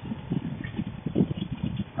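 Paramotor flight noise, wind and motor, picked up by a noise-cancelling Bluetooth helmet microphone, which chops it into an irregular, choppy run of low thumps and rustles.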